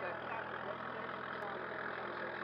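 Engine of a yellow boom-armed farm machine running steadily, a continuous low drone with a faint single click about one and a half seconds in.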